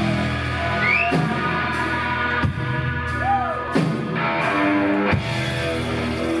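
A rock band playing live, with electric and acoustic guitars, keyboards and drums. Sustained notes run under several notes that bend up and down, and a drum hit lands about every second and a half.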